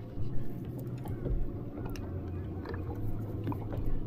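Faint handling noises, small clicks and rustles, as a freshly caught bass is held and worked free of a swimbait, over a low steady hum.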